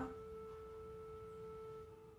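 A soft, steady held musical tone with faint overtones, fading out near the end.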